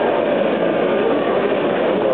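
Car doing a burnout: the engine is held at high revs while the drive wheels spin on the tarmac, making a steady loud noise with a wavering pitch.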